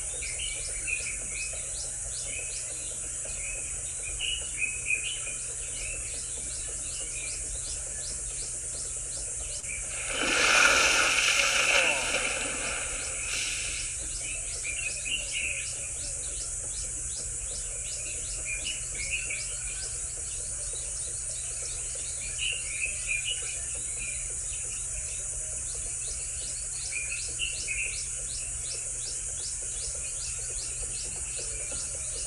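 Nature ambience of insects and birds: a steady high insect buzz with a fast, even pulsing trill, and short bird chirps every few seconds. About ten seconds in, a louder rushing sound lasts two or three seconds.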